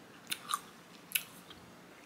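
A person chewing a mouthful of watermelon, with a few short, wet, crunchy clicks.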